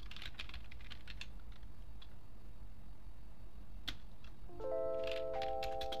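Keystrokes on a computer keyboard, irregular and spaced out, as a text prompt is typed. Background music with held notes comes in about four and a half seconds in.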